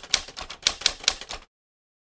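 Typewriter sound effect: a quick, irregular run of key strikes clacking out letters, stopping sharply about one and a half seconds in and giving way to dead silence.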